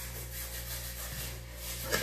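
Fingers rubbing and pressing cooked rice on a plastic plate during a meal eaten by hand, faint over a steady low hum and hiss, with a short louder sound near the end.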